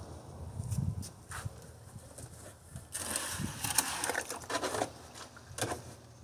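Handling and movement noises: scattered knocks and clicks, with a louder stretch of rustling about halfway through.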